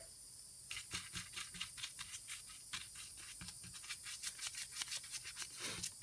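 Bristle brush scrubbing soapy water over a two-stroke engine's cast aluminium crankcase: quick, irregular scratchy strokes, several a second, beginning about a second in. The soap mix is being painted on under crankcase pressure to show air leaks as bubbles.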